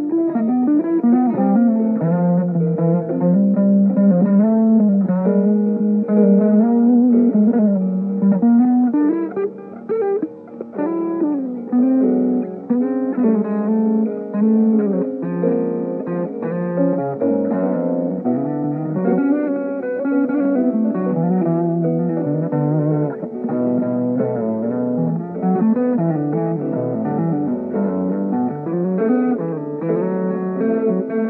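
Solo guitar playing a slow melodic line, its notes bending and sliding in pitch while other strings ring beneath.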